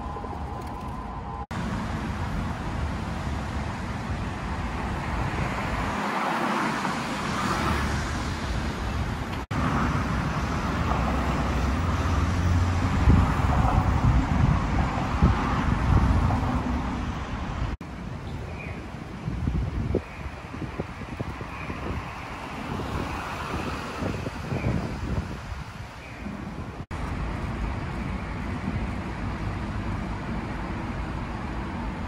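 Steady city street traffic noise from road vehicles. It swells louder with a low rumble from about ten to sixteen seconds in, and the background changes abruptly several times.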